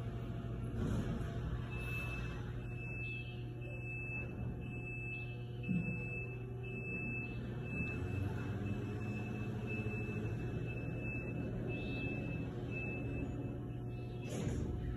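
A steady low hum, with a faint thin high-pitched tone that comes in about two seconds in and holds, breaking briefly now and then, until near the end. There is a single soft knock about midway.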